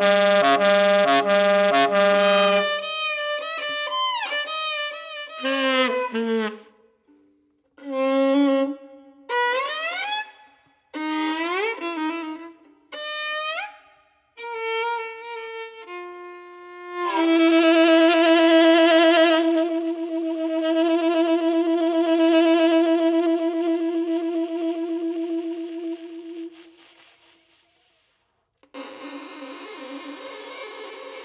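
Free-improvised music, led by a violin: a repeated pulsing figure, then a run of short upward-sliding phrases broken by pauses, then a long held note with vibrato that stops a few seconds before the end.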